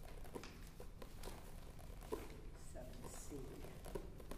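Quiet small-room tone with faint scattered scratches and rustles of pencils on paper and workbook pages, and a brief low murmur of a voice about three seconds in.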